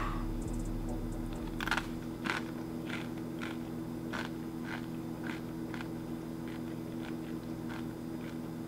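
A person chewing a crunchy chip, about two crunches a second, growing fainter as it is eaten, over a steady low hum.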